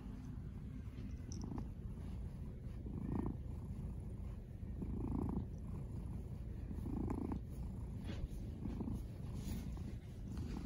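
Persian cat purring steadily as it is stroked, the purr swelling louder about every two seconds.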